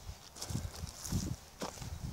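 Footsteps of a person walking on an overgrown woodland path: a few soft, uneven footfalls with light crackling of vegetation underfoot.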